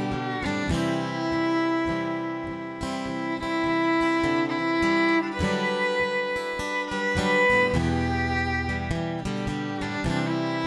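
Instrumental break: a fiddle plays held melody notes over an acoustic guitar keeping a steady strummed rhythm, with no singing.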